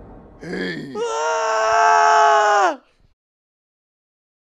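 A person's voice: a short whimpering sound, then a loud, high-pitched wail held on one note for nearly two seconds that cuts off suddenly.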